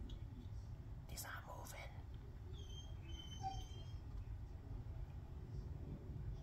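Soft whispering for under a second, about a second in, over a low steady rumble. A few faint, short, high-pitched chirps follow in the middle.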